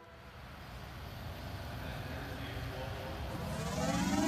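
A quiet, low rumbling noise that swells steadily louder, with faint rising tones coming in near the end: an electronic sound-effect build-up that opens the next track of the album.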